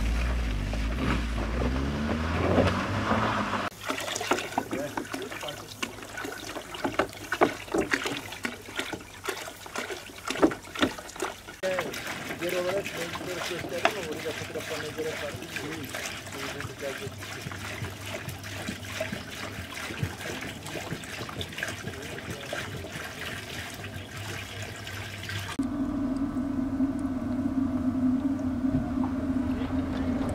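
A car engine pulls away for the first few seconds. Then come sharp knocks and clatter of plastic water jugs being handled, and water gurgling as it runs from a hose into a jug. Near the end a small electric submersible water pump hums steadily.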